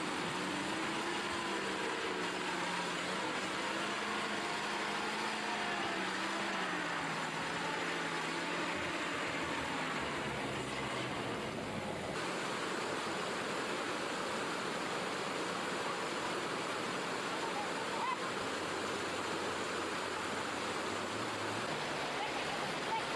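Heavy truck engine labouring at low speed, its note wavering and slowly sinking, over the rush of a fast river. About twelve seconds in the engine fades out and only the steady rushing of the water remains.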